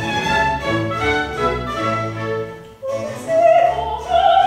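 Operatic soprano singing with a chamber string orchestra accompanying, cello and double bass among them. After a short break in the line just before three seconds, she takes a loud, held note near the end.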